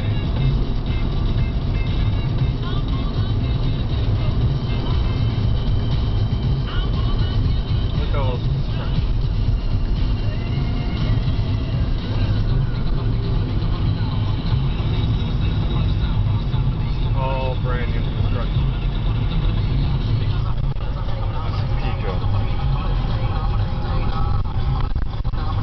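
Steady road and engine rumble inside a moving Peugeot car on a motorway, with music and a voice playing faintly over it.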